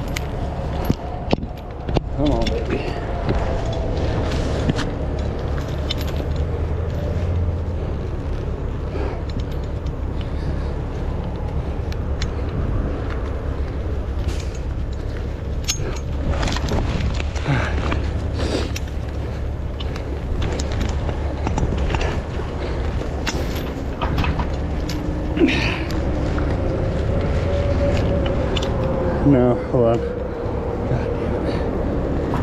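Heavy recovery truck's diesel engine running steadily, with the clink and rattle of alloy rigging chain links being handled against a steel hook.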